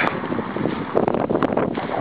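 Wind blowing on the microphone, a steady noise, with a couple of light clicks about a second in.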